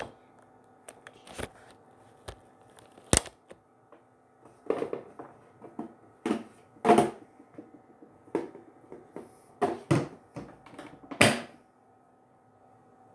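Irregular clicks and knocks of plastic skincare bottles and containers being taken from a small mini fridge and set down on a stone countertop, with the fridge's door handled. The knocks come one or two at a time, with short quiet gaps between them.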